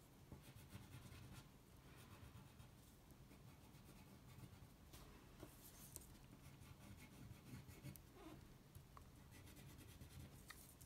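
Faint scratching of a wax crayon colouring back and forth on paper, going over a spiral line to thicken it.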